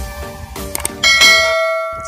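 Subscribe-button sound effect: a few clicks, then a bright bell chime about a second in that rings on and fades out.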